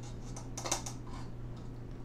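A few light clicks and scrapes of a measuring spoon being dipped into a can of baking powder, bunched together a little past halfway, over a steady low hum.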